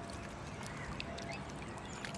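Faint, short waterfowl calls over a steady background hiss.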